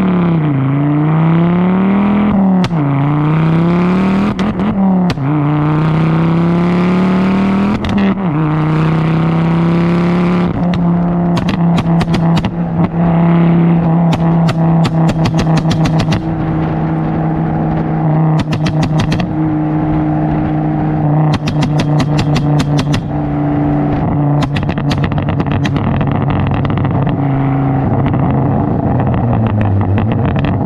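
Ford Focus with a tuned, turbocharged Focus ST petrol engine accelerating hard: the engine note climbs and drops at each of about three upshifts in the first eight seconds, then holds steady at high revs. Clusters of sharp crackles come and go through the second half.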